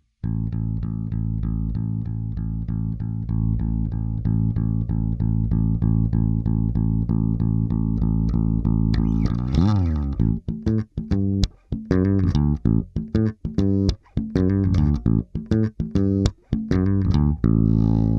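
Four-string electric bass played through a Lusithand Ground & Pound bass distortion pedal: about nine seconds of fast repeated notes on one low pitch, a slide, then a choppy stop-start riff that ends on a held ringing note.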